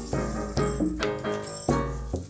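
Live improvised ensemble music: a pair of maracas shaking over keyboard notes, bass tones and drum hits.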